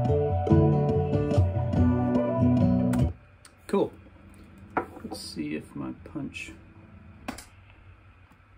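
A full song mix with a Gibson ES-335 electric guitar overdub played over it, cutting off abruptly about three seconds in. After that there is a quiet room with a few faint clicks and some low muttering.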